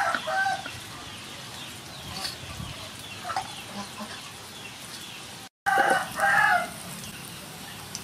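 Chickens calling: a rooster crowing and hens clucking, with one call at the very start and a louder one about six seconds in, just after a brief dropout in the sound.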